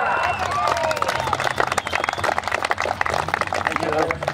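Crowd clapping steadily, with voices calling out over the applause.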